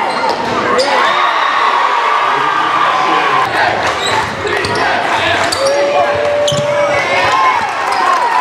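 Indoor basketball game: a ball dribbling and bouncing on a hardwood gym floor, with shouting voices from fans and players throughout and a few held calls or squeaks, echoing in the gym.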